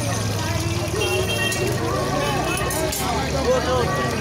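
Busy street ambience: several people talking at once over a steady low rumble of traffic.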